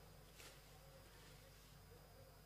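Near silence: a faint steady low hum, with a brief soft hiss about half a second in.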